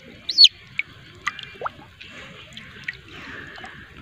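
Shallow pond water dripping and sloshing faintly as a fish stirs in it, with scattered small splashes. A few short, high chirps that fall in pitch cut through, the loudest near the start.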